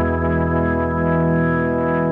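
Instrumental rock music: a sustained chord of electric guitar through chorus and distortion effects, over organ, held steady with no beat.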